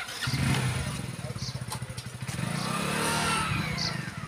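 A motorcycle engine running close by, its hum starting just after the beginning and growing louder in the second half, with a falling whine near the end.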